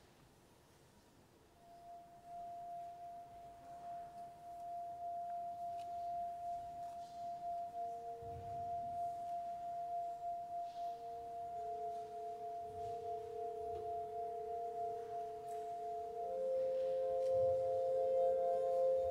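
Wine glasses rubbed around the rim, sounding pure, sustained tones. One steady tone comes in about a second and a half in, a lower one joins at about eight seconds and another at about twelve, and a further tone enters near the end, building a slow layered chord that grows louder.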